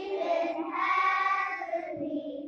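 A children's choir singing together, holding long notes, moving to a new note about a third of the way in.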